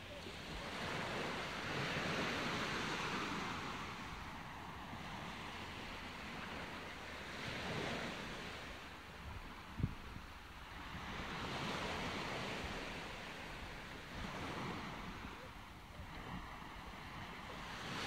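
Wind blowing in gusts, a soft rushing noise that swells and fades every few seconds, with one brief knock just before ten seconds in.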